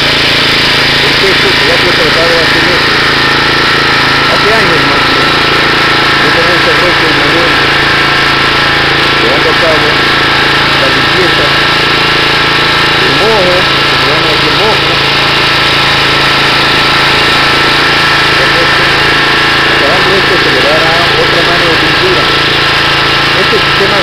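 Pressure washer running steadily, a constant motor drone with a fixed pitch, as its water jet washes down a concrete roof.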